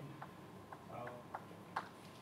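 Chalk tapping and scraping on a blackboard as symbols are written: a handful of short, sharp taps, the one near the end the loudest.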